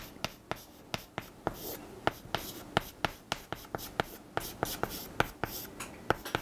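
Chalk writing on a chalkboard: an irregular run of sharp taps and short scrapes, several a second, as the strokes of Chinese characters are drawn.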